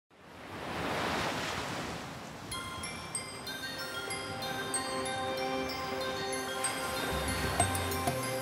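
Surf washing in on a beach, swelling up over the first second, then light music with short repeated notes coming in about two and a half seconds in, with a bass part joining near the end.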